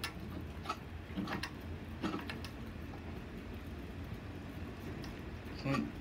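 Wilesco model steam engine making a few slow, separate clicks about 0.7 s apart in the first two seconds, then falling quiet over a faint low hum. The engine is stalling, which the owner puts down to a hydraulic lock.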